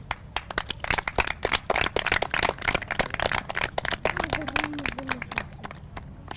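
A group of children clapping: many quick, irregular claps that thin out near the end.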